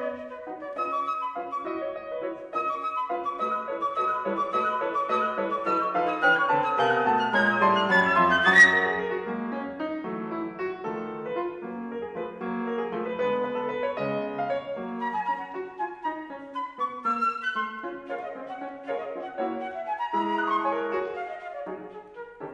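Concert flute and grand piano playing a classical duet. The music swells to its loudest point about eight and a half seconds in, then eases, with a quick rising run near the end.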